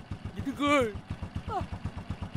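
Small step-through motorbike engine idling, an even low putter of rapid, regular beats running under the voices.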